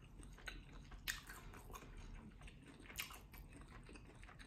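Faint closed-mouth chewing of a mouthful of food, with a few soft, wet mouth clicks spread through it.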